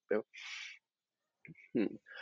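A man's speech pausing between sentences: a brief syllable, a short breath, a silence, then a couple of short hesitant voiced sounds near the end.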